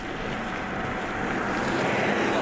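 Wind rushing over the microphone: a steady rushing noise with no voices, swelling gradually.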